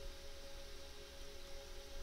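Faint steady background hum with a thin constant tone and light hiss.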